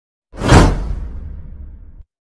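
Whoosh sound effect for a subscribe-button animation: it starts about a third of a second in, swells quickly and fades away over the next second and a half over a low rumble.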